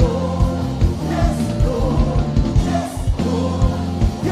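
Live gospel band with group singing: an electric bass guitar, a keyboard and drums play under the voices, with a steady drum beat.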